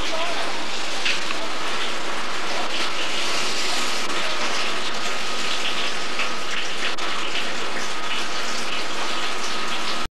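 Hail and rain coming down steadily: a dense hiss dotted with many small ticks of hailstones striking.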